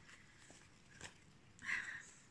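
Quiet handling of a fabric project bag: faint rustling with two light clicks, then a short soft rustle near the end.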